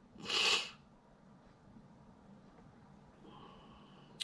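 A man's short, sharp breath out through the nose, about half a second long, followed by near quiet.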